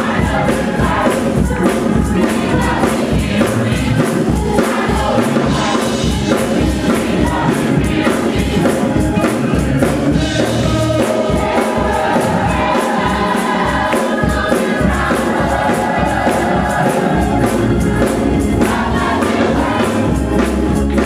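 Gospel choir singing an upbeat song with keyboard accompaniment and steady hand-clapping in time with the beat.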